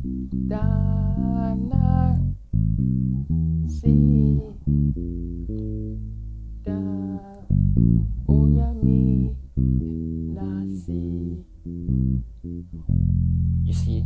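Electric bass guitar playing a reggae bassline, a quick run of separate low notes with short breaks between phrases. It is strung with old strings, which the player says make it sound funny. A voice sings along over it in places.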